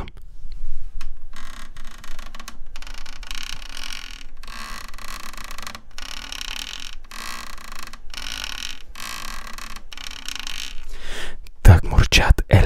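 A headphone cable scraped and rubbed against the unplugged Polivoks synthesizer, close to the microphone: a series of scraping strokes, each a second or so long, with brief breaks between them.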